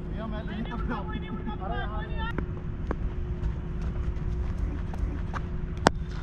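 Faint voices of players calling across an open cricket ground, over a steady low hum and a low rumble. A single sharp knock sounds just before the end.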